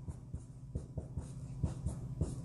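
Whiteboard marker writing on a whiteboard: a run of light, irregular taps and short scratchy strokes of the felt tip as characters are written.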